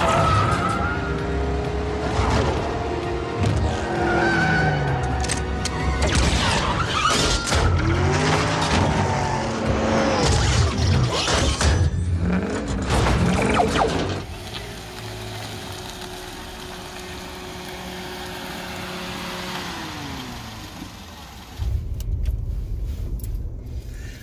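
Car-chase film soundtrack: music over engines revving and crashing impacts. It cuts off suddenly about 14 seconds in, leaving a quieter, steady sound with held tones that slide down near the end.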